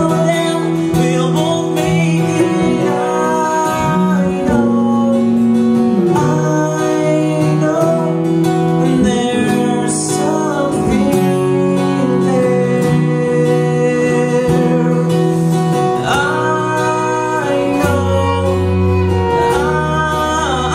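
Live musical-theatre duet: male voices singing a song with band accompaniment, with deeper bass notes joining near the end.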